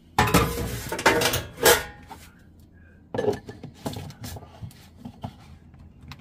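Kitchenware being handled on a counter: a loud clatter of dishes and utensils in the first two seconds, then scattered knocks and clinks.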